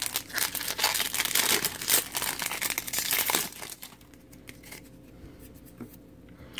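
Wrapper of a 2015-16 Upper Deck Champs hockey card pack being torn open and crinkled for about three and a half seconds. After that come a few faint clicks of the cards being handled.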